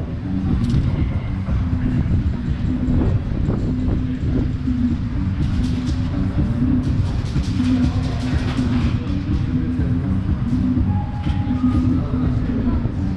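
Aerosol spray paint can hissing in short bursts as paint is sprayed on a wall, over a loud, steady low rumble.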